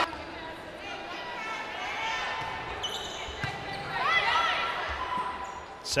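Sounds of an indoor volleyball match echoing in a large arena: crowd and player voices, sneakers squeaking on the hardwood court, and the ball being struck as a rally starts.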